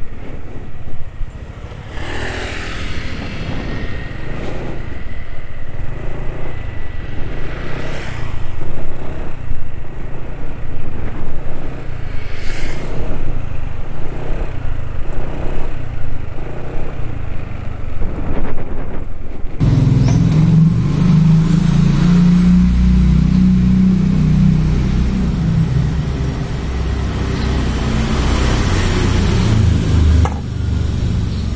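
Motorcycle engine running while riding, with road and wind noise, rising in pitch a few times as the throttle opens. About two-thirds of the way in the sound changes abruptly to a louder, deeper rumble.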